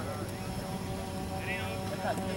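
Open-air ambience: a steady low rumble with a faint constant hum. A distant voice calls out briefly near the end.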